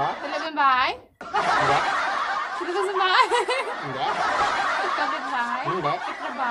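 A young woman and man talking quickly and laughing, with a brief break about a second in.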